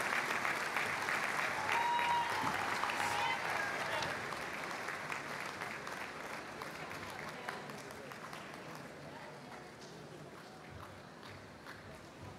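Audience applauding, a dense patter of clapping that fades away gradually.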